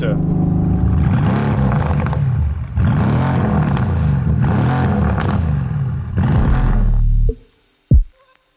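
Tuned Mercedes-AMG GT R's twin-turbo V8 running loud through its straight central exhaust under hard acceleration. The sound breaks briefly twice, about three and six seconds in, and cuts off suddenly after about seven seconds.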